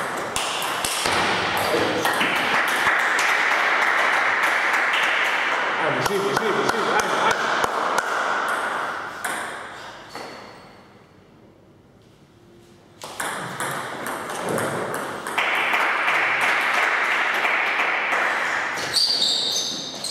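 Celluloid/plastic table tennis ball being struck by rubber-faced bats and bouncing on the table, sharp ringing pings, at the start and again near the end as a new rally begins. Between the rallies come two long stretches of loud, even noise.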